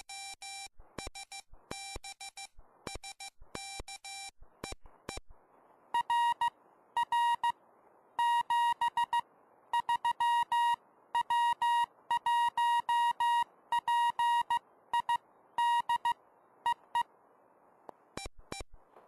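Morse code tones from a RockMite 40 m QRP transceiver. For the first five seconds a lower-pitched tone is keyed as the operator sends on the key. Then receiver hiss comes up and a louder, higher-pitched Morse signal from the other station is heard until near the end.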